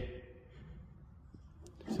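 Quiet pause: faint low background rumble, with two faint small ticks in the second half.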